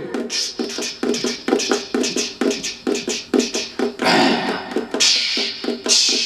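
Percussion played by hand on a concert ukulele without sounding the strings: quick, uneven knocks, several a second, imitating a horse's galloping hoofbeats. Two hissy rushes of noise come in over the knocking in the second half.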